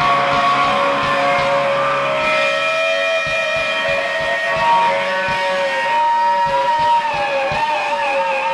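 Live rock band playing: electric guitars holding long, droning notes over a steady drum beat.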